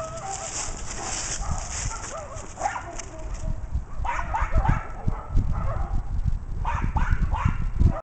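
A dog giving short yips and whines in quick runs, a cluster about four seconds in and another near the end, over low thumps on the microphone.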